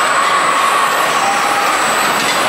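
Kiddie roller coaster cars rolling along their steel track: a steady rush of wheel noise with a faint high whine running through it.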